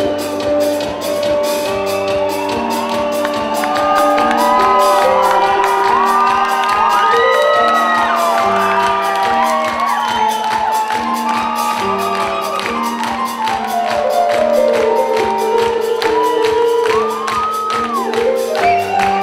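Live band music: sustained keyboard chords on a Roland Fantom-X6 synthesizer changing every second or so, over a fast, steady drum-kit beat.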